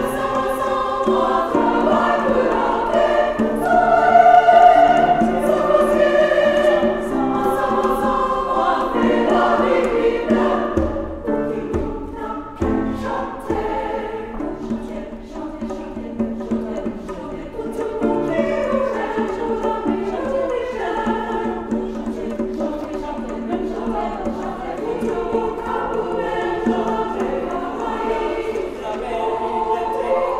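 Choir singing a choral piece in parts, loudest a few seconds in, softer for a stretch in the middle, then swelling again.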